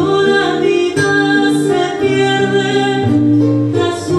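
Andean folk ensemble playing live: a woman's voice singing a slow melody over strummed charango and acoustic guitar.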